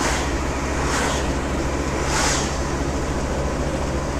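Volkswagen T4 camper van driving on a country road, heard from inside the cab: a steady engine drone under tyre and wind roar. The rushing noise swells briefly twice, about one and two seconds in, as oncoming vehicles pass.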